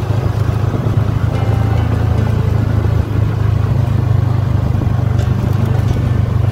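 A vehicle's engine running steadily, a loud low drone that carries through the whole moment while travelling on a rough dirt road.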